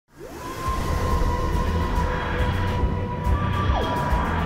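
Electronic intro sting for the channel's logo: a synth tone glides up into a long held high note over a dense rumbling bass, then sweeps down just before the end.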